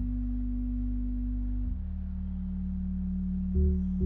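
Background music: sustained low notes, shifting to a new chord about 1.7 s in, with a heavy low bass hit near the end.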